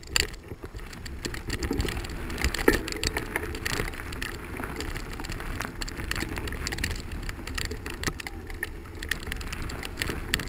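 Bicycle rolling over a gravel dirt trail: the tyres crunch and crackle on the stones, with a constant low rumble and frequent sharp rattles and knocks from the bumps.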